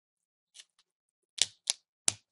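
Small clicks from metal tweezers working at the video cable's adhesive tape and connector behind a netbook screen: a faint tick about half a second in, then two sharp clicks close together near the end.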